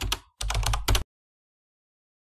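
Computer-keyboard typing sound effect: a quick run of key clicks that accompanies on-screen text being typed out, stopping about a second in.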